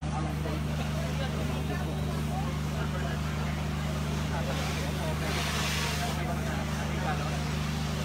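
An engine running steadily, a low even drone, with a brief hiss about five seconds in.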